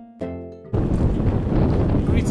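Plucked-string background music, one note struck and ringing out; under a second in it cuts off abruptly to loud wind buffeting the camera microphone.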